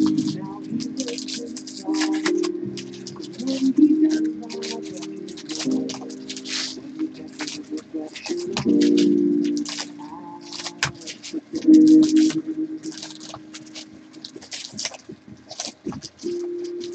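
Background music with held low notes that change in steps, over the crinkling of torn foil trading-card pack wrappers and cards being handled and flicked into piles.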